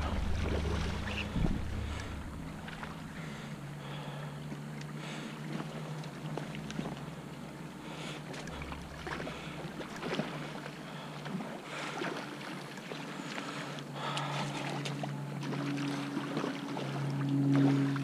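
Shallow creek water running, with wind on the microphone and occasional short splashes from a hooked salmon thrashing at the surface.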